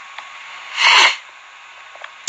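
A single loud, sharp, breathy burst from a man about a second in, lasting under half a second, with low room noise around it.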